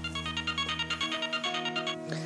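Mobile phone ringing: a quick electronic ringtone melody of short repeated notes, about ten a second, that stops near the end as the call is answered, over background music with low held notes.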